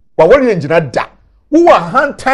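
Speech only: a voice talking in two short phrases with a brief pause between them.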